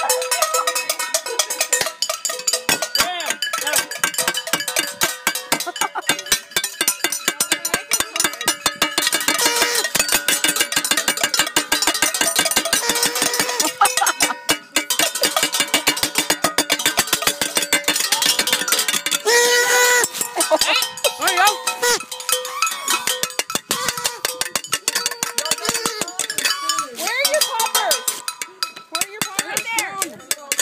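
New Year's midnight noisemaking: a dense, rapid clatter of bangs and clicks with ringing metallic tones, and shouting now and then.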